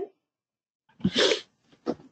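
After about a second of silence, a person's short, breathy vocal sound comes over the call, followed by a faint click near the end.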